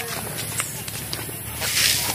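A pause in a man's talk: steady outdoor background noise with a few faint clicks and a short hiss, like a breath, near the end.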